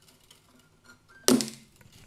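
Wire cutters snip through an old steel guitar string with one sharp snap about a second in, followed by a brief ring as the string lets go of its tension.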